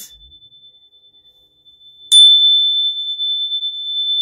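A single steady high-pitched tone: faint at first, then jumping to loud with a click about halfway through and holding at one pitch.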